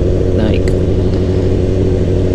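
Sport motorcycle engine running at a steady cruising speed, its note holding level with no revving, over low wind rumble on the camera microphone.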